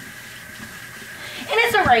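Water running steadily from a kitchen tap into a metal pot as it is washed by hand. A woman starts speaking about a second and a half in.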